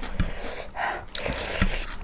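Close-up eating sounds: chewing and breathing through the nose, with a few short clicks and soft knocks as food is picked from the plate by hand.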